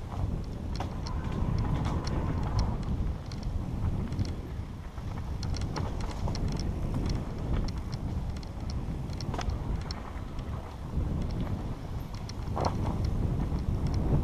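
Mountain bike descending a dirt forest trail, heard from a camera on the bike or rider: a steady rush of wind on the microphone and tyres rolling over dirt and leaves, with scattered sharp clicks and rattles from the bike over bumps.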